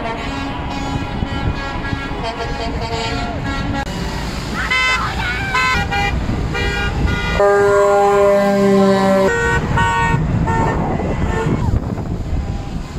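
Vehicle horns honking repeatedly from a passing convoy of trucks and pickups, a string of short toots and then one long truck air-horn blast of nearly two seconds starting about seven and a half seconds in, over a steady rumble of traffic.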